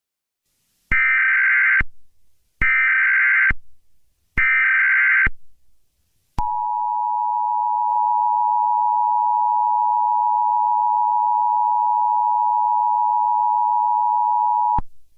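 Emergency Alert System tones: three short bursts of SAME header data, each just under a second, followed about six seconds in by the steady two-tone attention signal (853 and 960 Hz) that announces an emergency alert broadcast.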